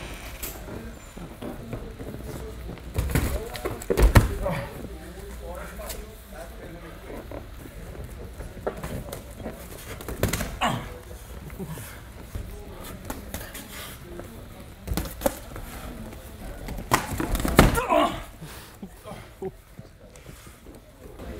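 Gloved punches and shin-guarded kicks landing during stand-up sparring: a scattering of short thuds and slaps, the loudest about four seconds in and a quick cluster near the end. Short grunts and breaths come between the strikes.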